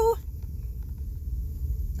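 Steady low rumble of a car heard from inside the cabin as it rolls slowly along, engine and tyres running. The tail of a held sung note cuts off at the very start.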